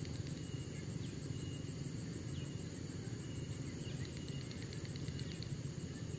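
Outdoor riverside ambience: a steady low rumble with a few faint, scattered high chirps.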